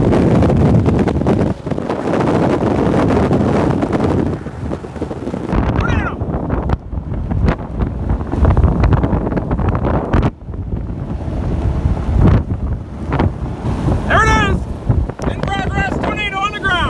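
Strong storm wind from a tornadic supercell gusting hard over the microphone: a heavy, buffeting rumble that eases somewhat after about five seconds. A voice calls out briefly near the end.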